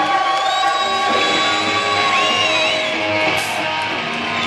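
Live hard rock band playing: an electric guitar holds one long note, bent up about half a second in and let go near three seconds, over pulsing bass notes.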